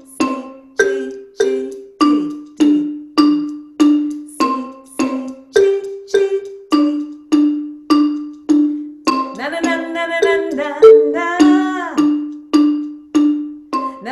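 Wooden-barred xylophone struck with mallets, playing a simple repeated ostinato of single notes on C, G and D at an even pace of a little under two strokes a second, each note ringing briefly and dying away. A voice sings along for a couple of seconds a little past the middle.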